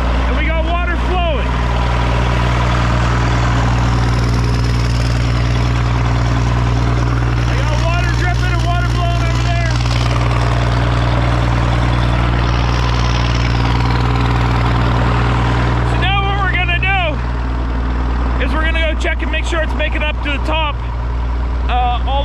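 Irrigation pump engine running steadily at an even speed just after starting, a deep constant hum.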